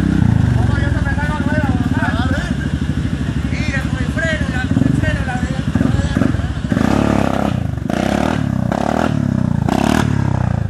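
ATV engine running under way, surging in short bursts in the last three seconds.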